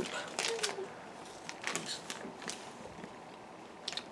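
Faint crunching of a raw apple being bitten and chewed, a few soft crunches spread through.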